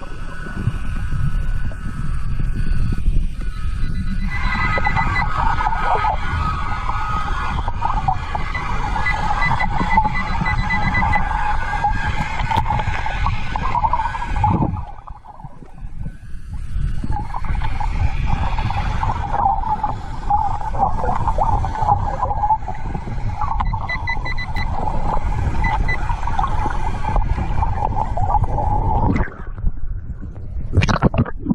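Quest Scuba-Tector underwater metal detector sounding its electronic target tone, a steady warbling beep heard through water, signalling metal under the sand. It sounds for about ten seconds, breaks off for a couple of seconds halfway, then resumes until shortly before the end, over a constant low rumble of water movement.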